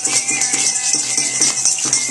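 Many hand-held plastic shakers rattled together by a group, a dense, continuous rattle that pulses unevenly as the shakers go out of step.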